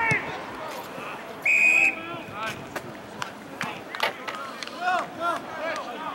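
A referee's whistle gives one high, steady blast about half a second long, about a second and a half in, the loudest sound here. Players and spectators shout around it.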